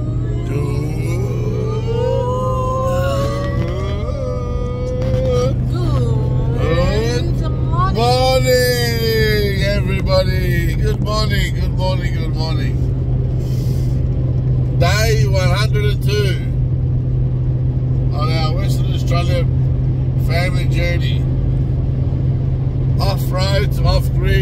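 Steady low drone of a Toyota LandCruiser 105 heard from inside the cabin while it drives at road speed. Voices sound over it: long sliding held notes like singing along in the first half, then short snatches of talk.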